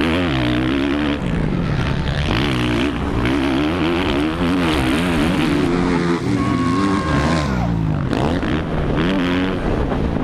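Motocross race bike engine revving hard, its pitch rising and falling again and again as the throttle opens and closes and the gears change, heard from the rider's helmet camera along with wind rush.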